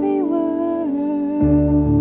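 A woman sings a slow worship song, accompanying herself on a Yamaha electric keyboard. Her sung line steps down in pitch over held chords, and a fuller, deeper keyboard chord comes in a little past halfway.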